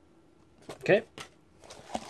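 Foil-wrapped trading card packs being handled in a cardboard box: a couple of light taps, then the wrappers begin to crinkle near the end.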